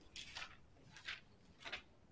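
Three faint, short rustles.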